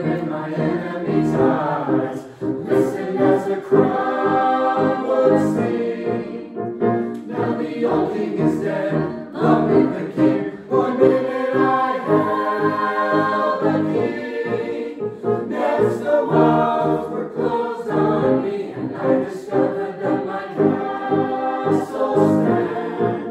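Mixed choir of men's, women's and children's voices singing a song in parts, with a steady rhythmic pulse.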